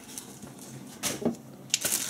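Tabletop handling noises: a brief rustle about a second in, then a sharp knock near the end as a folding knife is set down on the wooden table.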